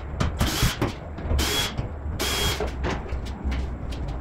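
Three short hissing bursts from a workshop tool, each with a thin high whine, amid scattered knocks and clatter of parts being handled.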